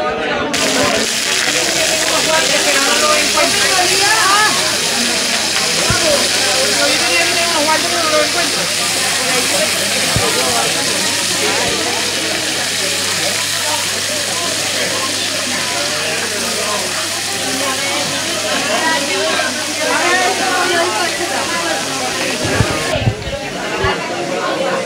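Pieces of cod frying in oil in a frying pan on an induction hob: a loud, steady sizzle that starts about half a second in and stops just before the end, with people chatting beneath it.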